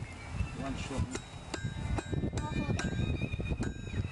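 Hand hammer striking hot steel on an anvil, a series of blows about two a second, each with a ringing metallic ping. Wind buffets the microphone with a steady low rumble.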